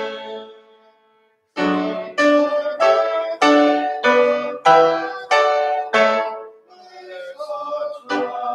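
Piano playing a slow hymn tune in full chords, each chord struck and left to ring. About a second in it breaks off briefly into silence before the chords resume, and it eases to a softer passage near the end.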